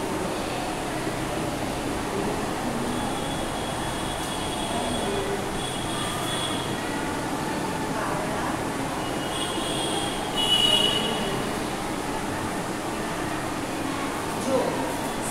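Whiteboard marker squeaking in short strokes while writing, loudest about ten and a half seconds in, over a steady background noise.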